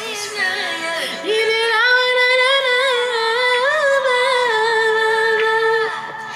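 A recorded song playing, in which a woman's singing voice holds one long note with slight wavers in pitch, from about a second in until just before the end.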